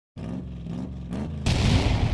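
Logo intro sound effect: a low rumble that swells up in pitch three times, then a loud boom-like whoosh about one and a half seconds in that fades away.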